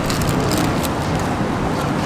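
Steady street background noise, a low rumble and hiss like traffic, with a few faint crinkles of the paper wrapping being handled.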